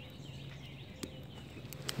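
Quiet outdoor ambience with faint distant bird calls and a few soft clicks, one about a second in and a couple near the end.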